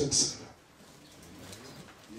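A short hiss right at the start, then quiet with a faint, low bird call about halfway through.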